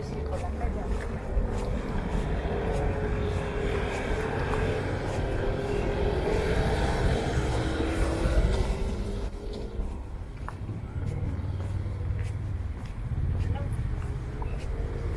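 A car driving past on the street: its engine and tyre noise builds over several seconds, is loudest about eight seconds in, then fades.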